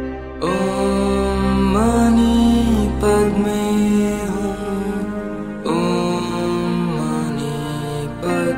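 A Buddhist mantra sung as a slow melodic chant over a steady low drone, in a few long held phrases, each beginning with a small bend in pitch.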